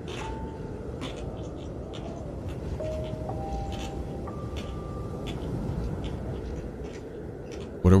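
A quiet, sparse piano melody of single held notes stepping up and down, over a steady hiss with a few faint clicks. A man's voice cuts in at the very end.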